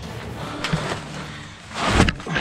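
Scuffing and handling noise of someone clambering through a cramped cellar, with a few faint knocks, then a louder rubbing rush near the end.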